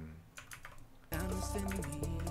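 A few light computer keyboard clicks, then about a second in a bachata song cuts in suddenly and loud.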